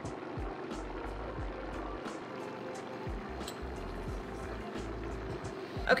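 Countertop blender running steadily at high speed, mixing a liquid egg, butter and cream cheese batter. Background music plays underneath.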